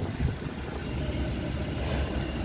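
A 2019 Ram 1500 pickup idling, heard from inside the closed cab as a steady low rumble.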